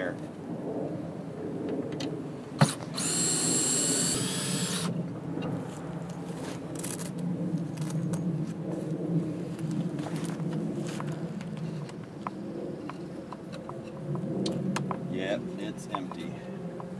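Cordless drill backing screws out of a wooden bait hive: a sharp click a few seconds in, then the motor whines for about two seconds, with a shorter burst a few seconds later.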